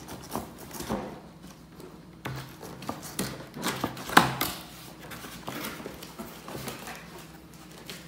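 Small knife cutting through the tape and cardboard of a box, with the flaps being handled: irregular scraping and tapping, with a sharp click about four seconds in.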